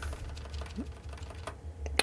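Computer keyboard keys being pressed: a scattered series of faint clicks over a steady low hum.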